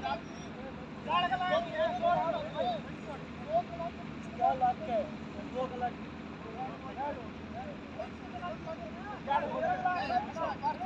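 Men's voices talking and calling out across an open ground, distant and indistinct, over a steady low background hum.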